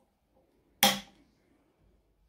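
Metal rings of an A5 six-ring binder snapped shut: a single sharp click about a second in, with a short ring-out.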